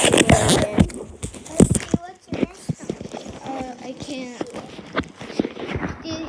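Irregular quick thumps and knocks from people moving about and handling the camera, with brief bits of children's voices in between.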